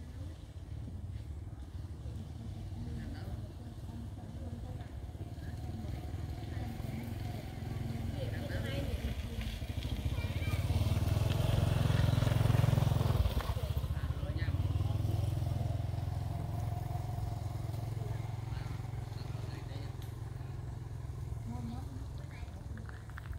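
A motor vehicle's engine running with a low rumble, growing louder to a peak about twelve seconds in and then slowly fading as it passes.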